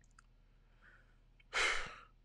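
A man's sigh: one short breathy exhale into a close microphone about one and a half seconds in, after near silence.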